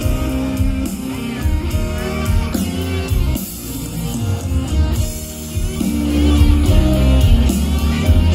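Live band playing an instrumental passage of a rock arrangement, with guitar and drums, while the choir is not singing.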